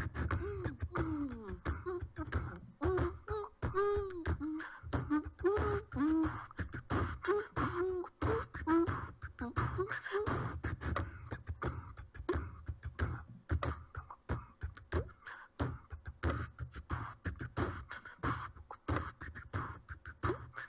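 Layered a cappella track playing back: beatboxed percussion clicks over a low bass line keep a steady beat throughout. Over it, a wordless vocal line of swooping, arching notes runs until about halfway through.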